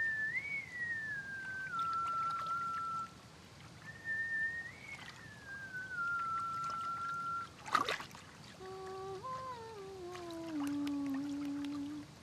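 A woman whistling a slow tune in two falling phrases, then a sharp click about eight seconds in, then humming a tune that steps down in pitch.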